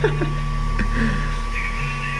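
A 4-inch Deaf Bonce subwoofer in a wooden box playing a steady low bass tone at high power, about 100 W RMS, with no change in pitch or level. The driver is at its limit and gives off a smell of scorching.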